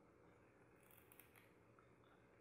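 Near silence, with a few faint, brief high clicks about a second in from rubber loom bands being handled and stretched between the fingers.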